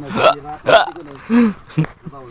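A person's voice making several short, sharp vocal sounds in quick succession, with a brief pitched sound near the middle.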